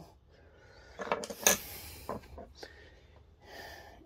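A few light clicks and taps of metal-shafted, plastic-handled nut drivers being handled and swapped, the loudest about a second and a half in, followed by a short soft breathy hiss near the end.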